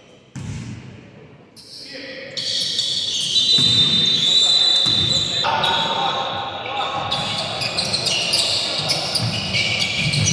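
Basketball game sounds on a hardwood court: the ball bouncing and players' voices calling out. From about two and a half seconds in it grows louder and busier, with many short high squeaks, likely sneakers on the floor as play resumes.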